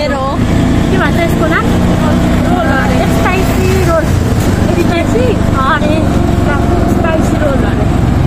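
Auto-rickshaw running steadily under way, heard from inside its open passenger compartment, with a continuous low engine hum.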